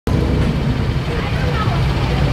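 Trolley bus engine idling at a stop, a steady low rumble.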